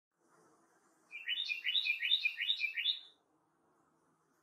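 A songbird singing one short phrase about five times in quick succession, each a high note dropping to a lower one. The song starts about a second in and stops shortly before the end.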